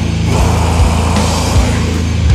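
Blackened sludge-doom metal: a heavy, sustained low drone of guitar and bass holds under intermittent drum hits.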